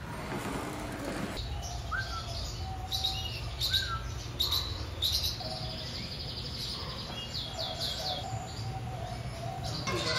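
Many small aviary birds chirping and tweeting, with quick high calls and a few short rising notes starting about a second and a half in, over a steady low hum.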